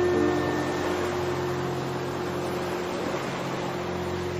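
Recorded ocean surf as a steady wash of noise under a low held drone. A few soft musical notes near the start die away within the first second.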